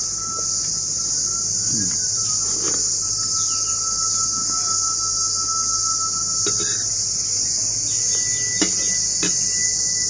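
Steady high-pitched drone of insects, with a thin steady tone held under it. A few short clicks of a metal spoon against a plate come in the second half.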